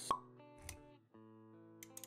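Background music with held notes, punctuated by a sharp pop just after the start and a softer low thud a little later, typical of intro-animation sound effects; the music drops out briefly about a second in.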